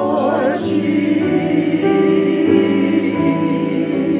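Church choir singing held chords, accompanied by flute and piano; the chords change every second or so.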